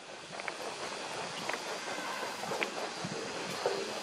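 Steady outdoor background noise, a hiss of wind and distant ambience, with a few faint ticks about once a second.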